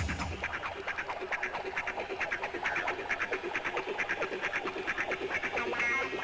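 Techno track in a breakdown: the kick drum and bass drop out, leaving a fast, high, staccato pattern of short synth or percussion hits, several a second.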